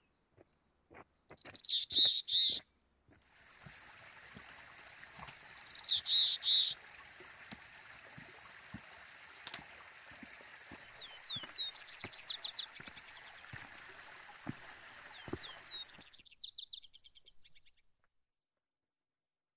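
Birds calling: two bouts of loud, downward-slurred calls, three or four in quick succession, about a second in and again around six seconds. Rapid trilled phrases follow later, over a steady faint hiss.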